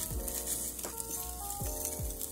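Scrambled eggs sizzling in a hot stainless steel frying pan as a fork stirs and scrapes them, with a few clicks of the fork against the pan. Background music with a beat plays underneath.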